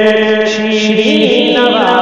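A man's voice chanting a devotional Urdu kalam (naat-style manqabat), holding a long steady note and then turning it through short melodic ornaments about a second in.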